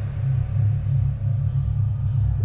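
A steady, deep droning rumble with a slight pulse, sitting low in pitch: a dark background music bed.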